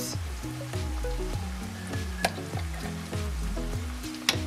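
Diced onion and chili pepper sizzling as they fry in oil in a nonstick pan, with background music playing a repeating low pattern underneath. One sharp tap comes about two seconds in.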